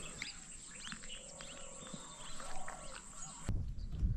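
Birds chirping, a string of short calls. About three and a half seconds in, the sound cuts abruptly to a low rumble.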